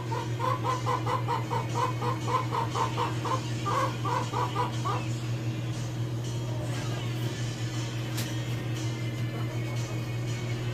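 Chickens clucking in a quick run of about four clucks a second that stops about halfway through, over a steady low hum.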